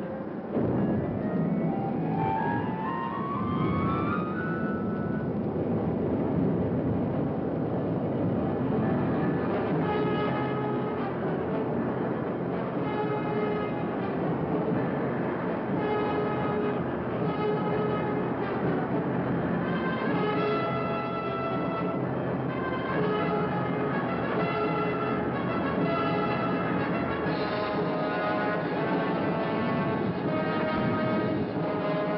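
Orchestral film score. Rising glides climb through the first few seconds over a dense, continuous low rumble, and from about ten seconds in, held brass notes come and go above it.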